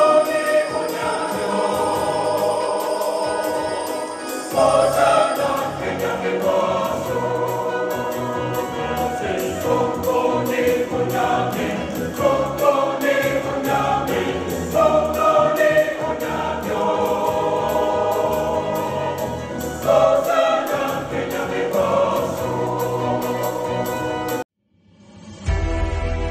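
Church choir singing a slow hymn in phrases, with a low bass accompaniment and a steady high ticking beat.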